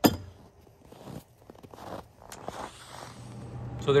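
A sharp click at the start, then a few faint knocks. Near the end a steady low hum fades in: the Bluetti AC200P power station running as it charges from a wall outlet.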